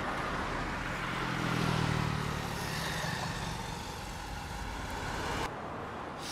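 Road traffic noise with a vehicle engine passing, loudest about two seconds in. The sound changes abruptly shortly before the end, dropping to quieter street ambience.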